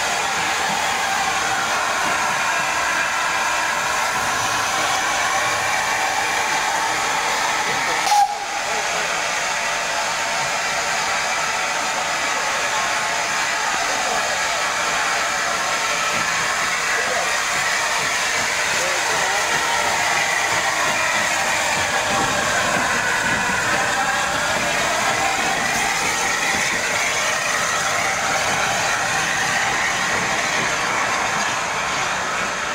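Saddle-tank steam locomotive letting off steam: a loud, steady hiss throughout. There is one short sharp click about eight seconds in.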